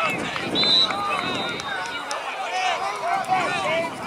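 Several people shouting and calling out at once, the voices overlapping with no clear words. A thin, steady high tone sounds faintly from about half a second in for over a second.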